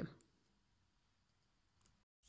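Near silence: faint room tone after a voice trails off, with a couple of faint clicks near the end.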